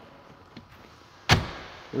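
One sharp thunk in a pickup truck's cab about a second and a half in, with a short fading tail, as a cab fitting is knocked or closed into place.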